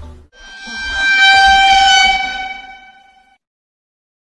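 An edited-in meme sound effect: one steady held note that swells up over the first second and fades out about three seconds in, with a low rumble beneath.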